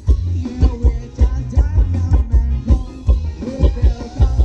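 Live Thai ramwong dance band music, amplified and loud, with a heavy drum beat about twice a second and a wavering melody over it.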